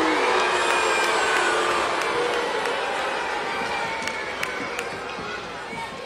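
Arena crowd reacting loudly to a wrestler's taunt on the microphone, a mass of shouts and cheers with single voices standing out, loudest at first and slowly dying down.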